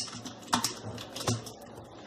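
Computer keyboard being typed on: a run of uneven key clicks, the loudest about half a second in and again just past a second.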